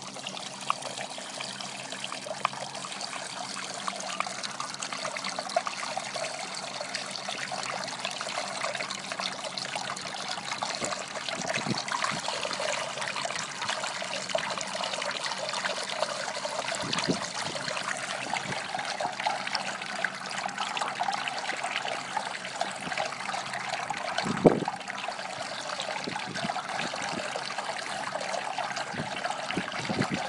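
Water running steadily from the spout of a stainless-steel dog water fountain bowl, splashing as a dog drinks from it. A few short knocks sound over it, the sharpest about three-quarters of the way through.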